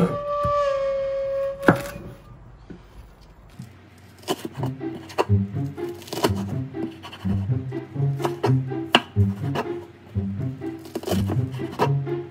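Chef's knife chopping green onion on a wooden cutting board: sharp, uneven strikes about once a second. Background music with a bouncing low bass line comes in about four seconds in, and a held flute-like note fades out near the start.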